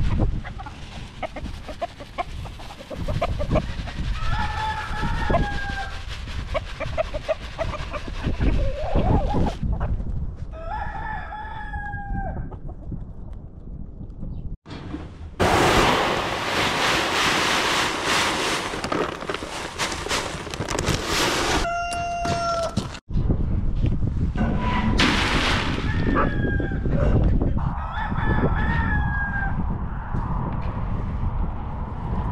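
Chickens clucking, with roosters crowing several times, each crow a long call that falls at the end. In the middle, a steady rushing of feed pellets being poured from a sack into a bucket.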